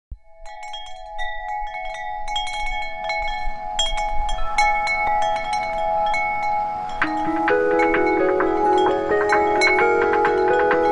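Wind chimes ringing, struck in an irregular cluster of bright tones that fades in and grows denser. About seven seconds in, a lower run of ringing notes joins them.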